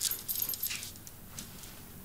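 Bracelets jingling lightly on a wrist as they are fiddled with: a few small metallic clinks, fading after the first second.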